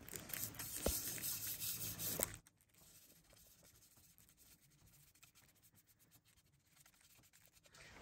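Brush bristles scratching as boiled linseed oil is brushed onto an oak-veneered board, with a single sharp click about a second in. The sound cuts off abruptly about two and a half seconds in, leaving near silence.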